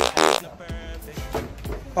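A short, loud buzz in the first half-second, then background music.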